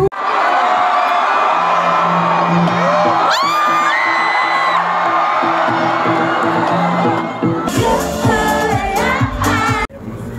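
Live pop concert amplified through a festival sound system, with the crowd cheering and screaming over a held note and a few rising whoops about three seconds in. Near eight seconds the full backing track with bass comes back in. The sound cuts off abruptly just before the end.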